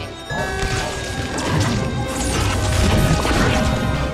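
Action-film soundtrack: repeated crashing and smashing impacts over dramatic score music, loud throughout.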